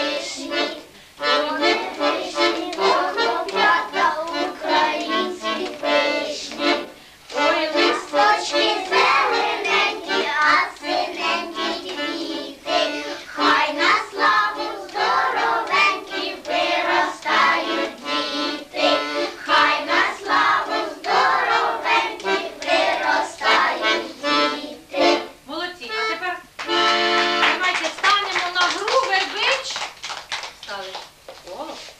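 A group of young children singing a song together with instrumental accompaniment; near the end a steady held chord sounds before the song stops.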